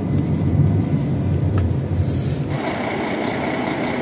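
Bus engine and road rumble heard from inside the passenger cabin. About two and a half seconds in it cuts off abruptly to lighter outdoor traffic noise with a steady high whine.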